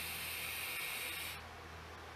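Smok TFV12 Prince sub-ohm tank with an X6 coil firing while air is drawn through it on a long inhale: a steady airy hiss that stops suddenly about a second and a half in.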